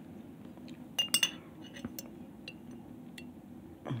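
Metal spoon clinking a few sharp times about a second in, then a few lighter ticks, as it scoops chow chow relish to put into a bowl of beans.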